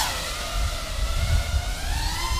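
FPV racing quadcopter's electric motors and propellers whining, the pitch dipping slightly and then climbing steadily as the throttle comes up, with a low rumble of prop wash on the on-board camera's microphone.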